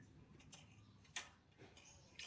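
Mostly near silence on a wooden hand loom for silk weaving, with one light wooden click about a second in and a fainter one just after.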